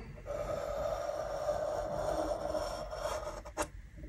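A drawing compass's pencil lead scraping on paper as the compass is swung round to draw a circle: a steady scratching lasting about three seconds, followed by a light click near the end.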